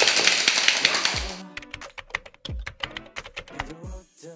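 Fast clapping and the rattle of plastic hand-clapper noisemakers, which stop about a second in. Underneath, background music with a deep kick drum about every second and a half; once the clapping ends, it goes on with sparse clicky percussion.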